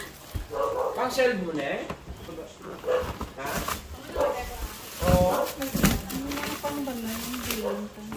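Voices with the rustle of plastic-wrapped goods and light knocks of items being handled in a cardboard box.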